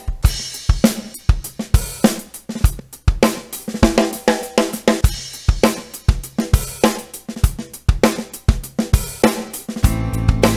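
Ketron Event arranger keyboard playing a built-in pop-rock drum pattern: kick, snare, hi-hat and cymbals in a steady groove. A sustained bass and chord come in near the end.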